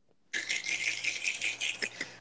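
A crackly, rustling rattle lasting just under two seconds over a faint steady hum, heard through a phone's microphone.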